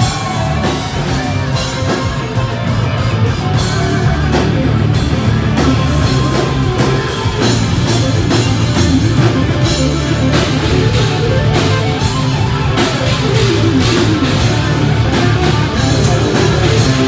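Live hard rock band playing loud, with distorted electric guitars over a drum kit and bass, recorded from the crowd.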